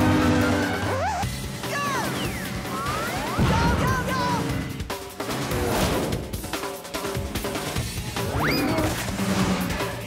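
Cartoon soundtrack: fast chase music with crashing and whacking sound effects and several short swooping pitch glides.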